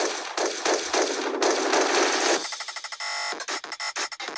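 A loud, rapid rattling sound effect, like machine-gun fire, over the title card. It cuts off about two and a half seconds in and gives way to a choppy run of fast clicks with a short tone in the middle.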